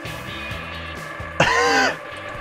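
Background music over a low steady hum; about one and a half seconds in, a person lets out a short, loud excited cry.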